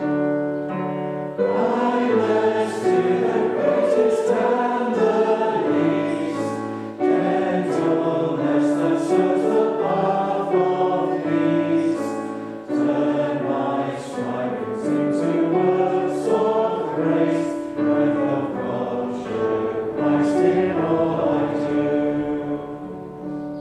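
A congregation singing a hymn together to instrumental accompaniment, in sung phrases with short breaks between lines.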